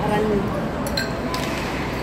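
Restaurant room noise: a steady murmur of background chatter, with a light clink of tableware about a second in.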